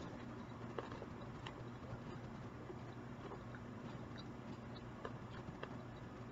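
A person chewing food with the mouth closed: faint, irregular crunching ticks over a steady low hum.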